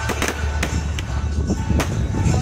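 Fireworks shells bursting with several sharp, irregular bangs, over loud music with a steady bass line.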